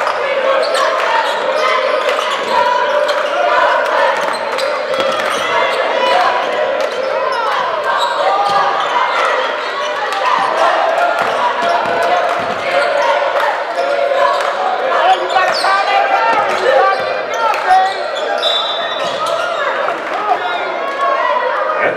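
Basketball game in a gymnasium: a crowd's voices chattering steadily while the ball bounces on the hardwood court, the hall echoing.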